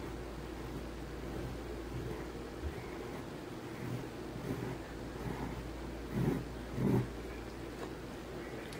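Faint pencil strokes on paper as a letter outline is drawn, over a steady low background hum, with two short, louder low sounds near the end.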